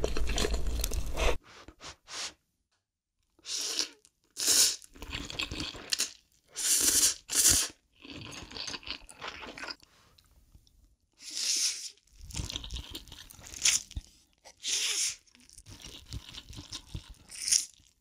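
Close-miked eating of Daebak Ghost Pepper instant noodles: a dense stretch of slurping that cuts off sharply after about a second and a half, then, after a short silence, a string of short separate slurps and wet chewing sounds with pauses between mouthfuls.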